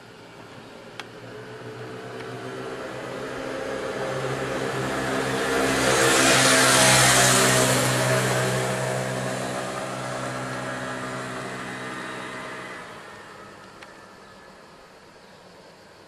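A motor vehicle passing by: a steady engine hum with a rushing hiss that swells to its loudest about seven seconds in, then fades away over several seconds.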